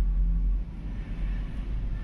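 A low, steady rumble, loudest for about the first half-second and then dropping a little.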